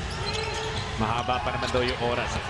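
A basketball being dribbled on a hardwood court, a run of bounces under arena crowd noise, with voices about a second in.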